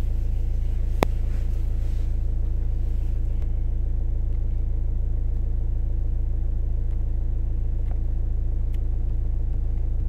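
Car engine idling while the car stands still, a steady low rumble heard from inside the cabin, with one sharp click about a second in.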